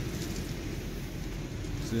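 Steady low rumble of outdoor background noise with no distinct events, ahead of a short spoken word at the very end.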